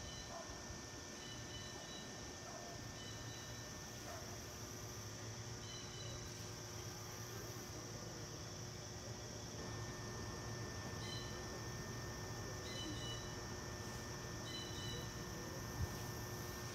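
Faint outdoor ambience: a steady high insect drone with short high chirps recurring every second or two.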